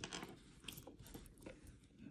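A few faint clicks and a light rustle as a gold Cuban link chain is lifted out of its box.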